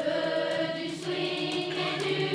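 Children's choir singing in unison, holding long sustained notes.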